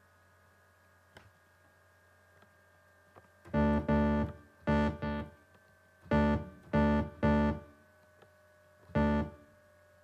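Logic ES1 synth bass played through Logic's Distortion plugin: about seven short, crunchy notes in small groups with gaps between them, starting about three and a half seconds in.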